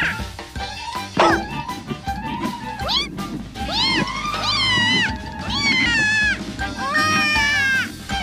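A cartoon kitten's high mewing cries, several in a row, each rising and then falling in pitch, over background music.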